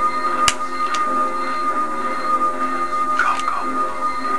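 Film soundtrack music from a VHS tape playing on a TV, heard through the set's speaker, with a steady high tone and a few sharp clicks.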